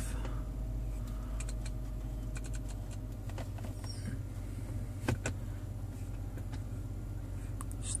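Scattered soft clicks of a BMW iDrive controller knob being turned and pressed as the dashboard screen's menus change, over a steady low hum in the car's cabin.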